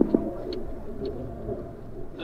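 Steady road and wind noise of a fixed-gear track bike being ridden on asphalt, with a few light clicks right at the start.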